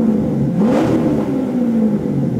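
Chevrolet Corvette C7's 6.2-litre V8 revved in park. The revs dip, climb again about half a second in, then slowly fall back.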